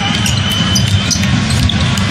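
A basketball being dribbled on a hardwood arena floor, heard as short repeated bounces over a steady arena crowd din.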